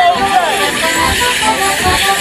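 Folk musicians playing the tune for a Morris dance, with the dancers' leg bells jingling and people chatting close to the microphone.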